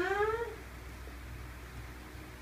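A young woman's drawn-out sleepy moan, rising slowly in pitch as she stretches in bed, fading out about half a second in.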